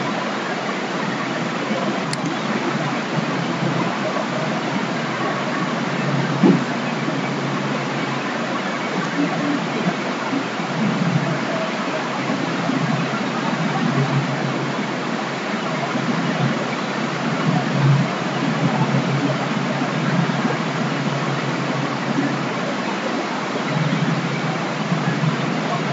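Steady hiss of recording noise with faint low murmurs in it, and a single short knock about six and a half seconds in.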